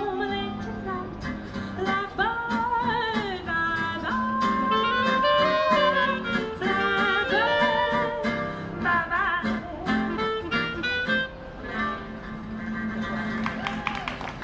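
Live street band: a woman singing into a microphone over acoustic guitar and clarinet.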